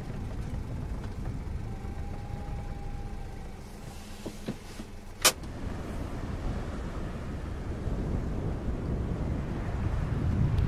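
Low rumble of a Honda S660 rolling slowly, heard from inside the cabin, with a couple of small clicks and one sharp click about five seconds in. After that comes waves washing on a rocky shore, with wind on the microphone, growing louder toward the end.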